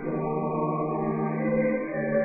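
A choir singing slow, sustained chant in long held notes, moving to a new chord at the start and again near the end.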